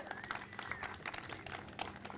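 Faint, scattered clapping from an outdoor audience, a thin spread of separate claps.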